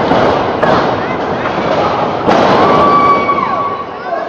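Sharp slams on a wrestling ring, about half a second in and again past two seconds, each followed by crowd shouting, with one long yell that falls off near the end.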